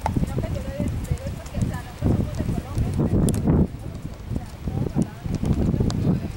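Horse hooves plodding at a walk, irregular low thumps, with indistinct voices.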